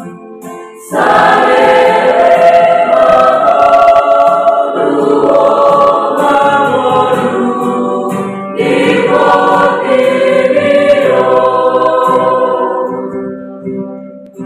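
Mixed youth church choir singing a song to acoustic guitar accompaniment. The voices come in strongly about a second in and fade away near the end as the song closes.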